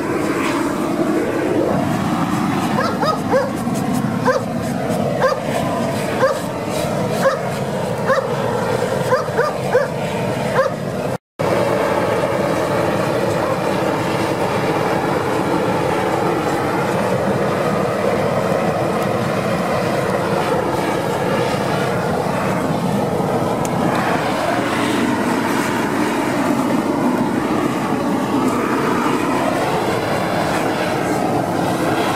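Steady roar of a gas torch burning as the pig carcass is singed, with a dog barking repeatedly during the first ten seconds or so.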